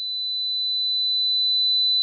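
A pure 4000 Hz sine tone, a single high pitch that holds steady while slowly growing louder.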